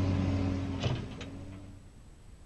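A heavy excavator's engine running with a steady low hum, fading out, with a couple of faint knocks about a second in.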